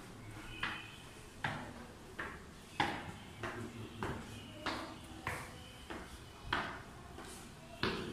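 Footsteps climbing concrete stairs at about one and a half steps a second, each step a sharp knock that rings briefly off the tiled stairwell walls.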